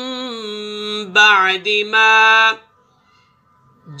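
A man reciting Qur'anic Arabic in a slow melodic chant, holding long steady notes. The voice breaks off about two and a half seconds in and starts again at the very end.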